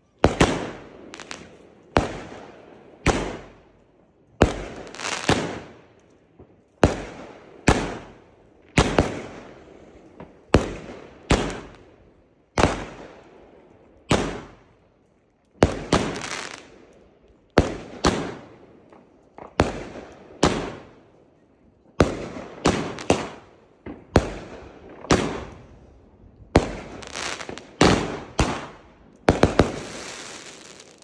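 Weco 'Blow Out' consumer firework battery firing a rapid series of loud shell bursts, roughly one to two a second, with each bang fading away in a short tail. Some bursts end in crackling effects.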